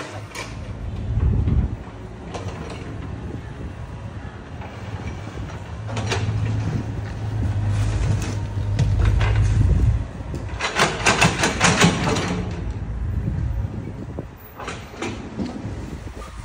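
Mini excavator's engine running with a steady low drone that grows heavier in the middle, as under load, then a burst of scraping and clattering of soil and rubble about eleven seconds in.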